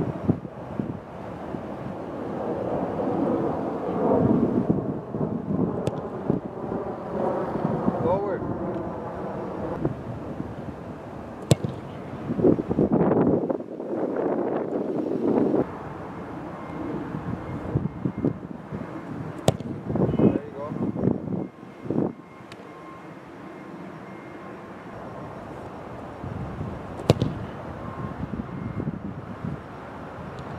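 A soccer ball being struck sharply a few times, each a short thud spaced several seconds apart, over wind noise on the microphone and indistinct voices.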